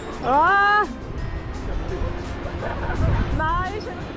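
A person calling out twice: a loud rising shout just after the start and a shorter rising call near the end, over background music.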